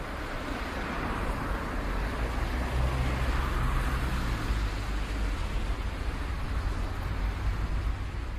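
Steady rumbling ambient noise with a deep low end and no music or voices, swelling slightly a few seconds in.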